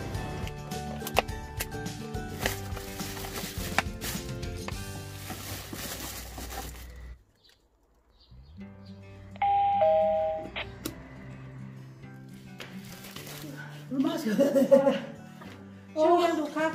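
Doorbell chime, one two-note falling ding-dong, about nine and a half seconds in. Before it, music with steady notes plays for the first seven seconds and then cuts off; a voice is heard near the end.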